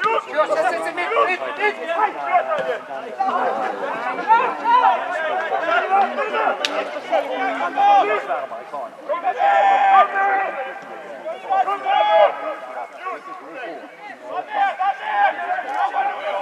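Several people talking over one another, loud and continuous, with one sharp click about six and a half seconds in.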